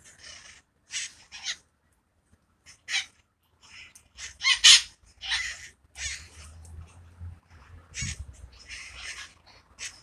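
Red-masked parakeets (wild conures) calling in a tree: a run of about a dozen short, harsh squawks at irregular intervals, the loudest a little before the middle.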